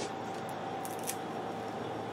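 Steady low room hum with a faint steady tone, broken by a few faint short clicks of handling about halfway through.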